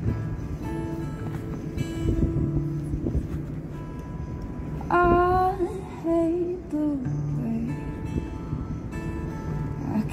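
Solo acoustic guitar playing the slow intro of a song, with a voice singing wordless, gliding notes over it about halfway through.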